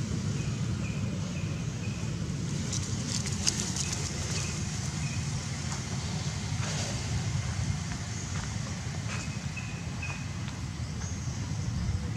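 Outdoor background sound: a steady low rumble, with faint short high chirps repeating in runs a few times and a few light clicks.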